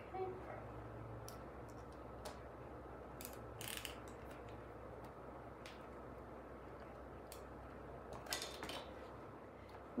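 Faint, scattered small clicks and taps of plastic and metal shade hardware being handled and fitted together by hand, with a short cluster of clicks near the end.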